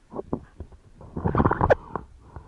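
Whitewater foam gurgling and splashing against a surfboard-mounted camera housing: a few short splashes, then a louder burst of splashing just past halfway.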